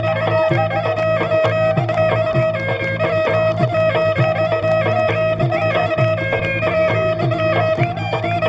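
Assamese Bihu folk music: a drum beats about twice a second under a melody, with one note held steadily throughout.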